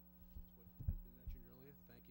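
Steady low electrical hum from the meeting-room sound system, with a few short low thumps on a microphone in the first second and faint speech after them.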